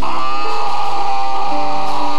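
Live church worship band music: a long held, slightly wavering high lead note over sustained chords, with the chord changing about one and a half seconds in.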